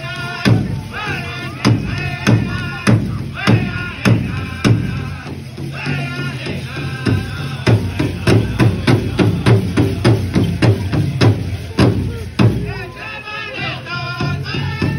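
Powwow drum group singing a side-step song: voices singing in phrases that fall in pitch over a large hand drum struck in a steady beat. The singing thins briefly a little before the middle, and the drum strokes come closer together in the second half.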